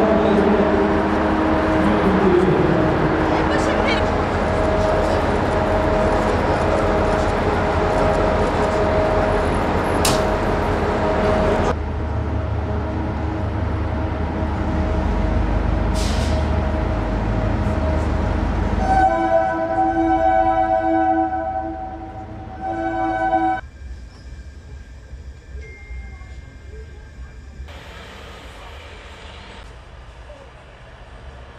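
A passenger train standing at the platform, its locomotive running steadily under the talk of a crowd. A little over halfway through, the train horn sounds one long blast of about four seconds.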